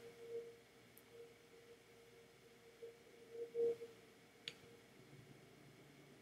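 Quiet room tone with a steady faint hum, a brief soft sound about halfway through, and a single soft click near the end.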